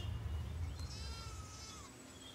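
A single high animal call, held for about a second and falling at the end, over a low rumbling hum that fades away.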